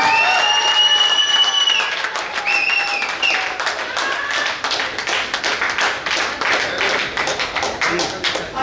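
A small crowd applauding with steady hand-clapping. A long held tone sounds over the clapping for about the first two seconds, and a shorter one comes about three seconds in.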